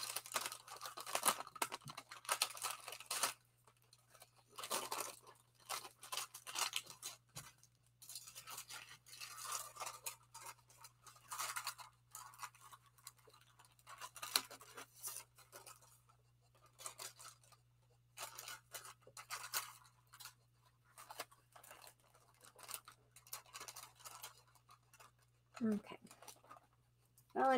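Parchment paper and card rustling and scraping in irregular bursts as they are handled, over a steady low hum.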